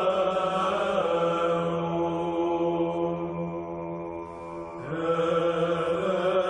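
Background music of sung chant: long held notes that change pitch about a second in and again near five seconds, after a brief dip in level.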